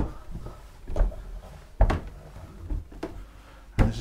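Footsteps climbing steep wooden steps: five dull thuds, about one a second.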